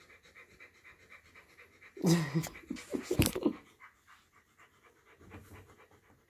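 Siberian husky panting with her mouth open: a fast, even run of faint breaths. A man's short word and laughter cut in about two seconds in and are the loudest thing.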